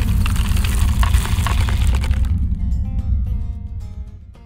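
Cinematic logo-reveal sound effect: a deep rumble with crackling and breaking sounds that dies away about halfway through. A few plucked music notes then come in and fade out.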